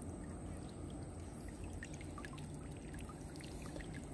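Shallow river water trickling and lapping around someone sitting in it, with small scattered drips and splashes as hands work in the water.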